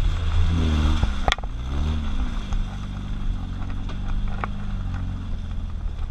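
Jeep Wrangler YJ's 2.5-litre four-cylinder engine revving up and down as it pulls through mud, then running at a steady pitch. A sharp knock comes about a second in and a lighter one near the end.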